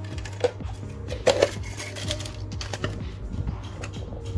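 Background music, with several sharp clicks and crackles from a plastic bottle being handled as a strip is drawn off it through a homemade blade cutter. The loudest click comes just over a second in.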